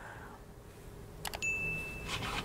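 An electric kettle heats water with a low, steady rumble. A little over a second in come two quick mouse-click sound effects, then a steady high ding, as from a subscribe-button animation.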